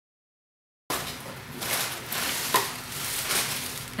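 Complete silence for about the first second, then paper wrapping rustling and crinkling as a small wrapped package is handled.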